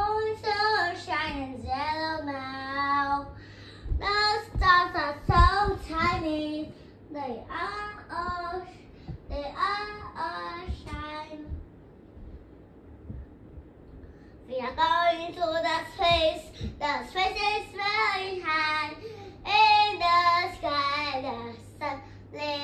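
A young girl singing unaccompanied in gliding, made-up phrases, with a pause of about two seconds near the middle.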